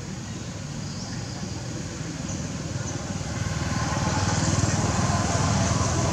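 A motor vehicle's engine running, growing louder about halfway through as it comes closer.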